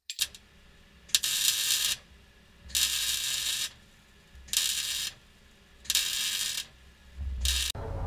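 A ratchet tool working under a jacked-up vehicle in five short runs, one about every second and a half, with a sharp click just before the first run.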